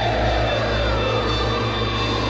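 Dark ambient soundtrack drone: a steady low rumble under tones that slowly fall in pitch.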